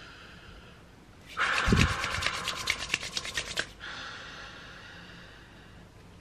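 A deep breath drawn through hands cupped over the face, with the rustle of palms rubbing against skin, lasting about two and a half seconds and starting just over a second in.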